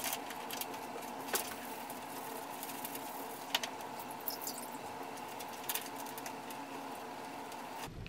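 Light handling noises of a leather bridle being wiped with a towel and of hands in a bowl of water: scattered small clicks and rustles over a steady faint hum.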